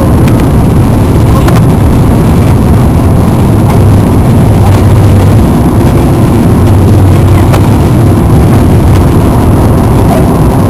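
The four CFM56 jet engines of an Airbus A340-300 running at takeoff thrust, heard from inside the cabin over the wing as the airliner lifts off: loud and steady throughout.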